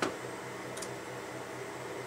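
Clicks from working a MacBook: a sharp one at the start and a fainter one just under a second in, over a low steady hum.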